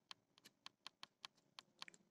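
Faint, irregular ticks and scratches of a ballpoint pen writing on paper, about ten short strokes in two seconds.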